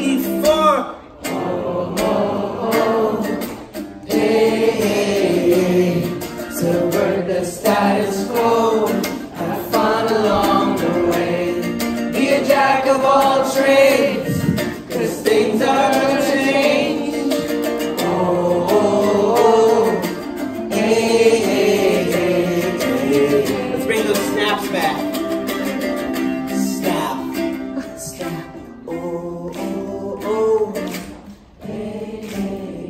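Ukulele strummed along with singing in a live song performance.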